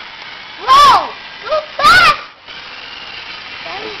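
Steady electric whir of a toy Caterpillar D9L bulldozer's motors driving its tracks, with the dozer able to go only forwards and backwards because one side's drive does not work. Two loud, high-pitched vocal squeals cut in, about one second and two seconds in.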